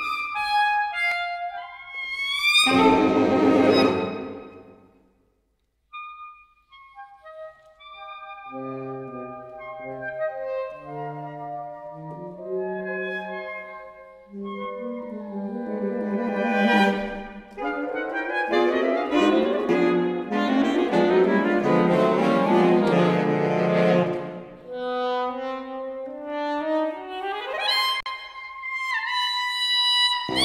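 Saxophone quartet of soprano, alto, tenor and baritone saxophones playing live. A loud chord about three seconds in breaks off into a brief silence. The voices then come in softly one after another and build to a loud, dense passage, and near the end a rising sweep leads into another loud chord.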